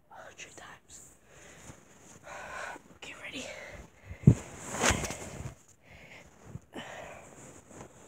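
A person whispering in short breathy phrases. A single sharp knock about four seconds in is the loudest sound, followed by a louder stretch of whispering.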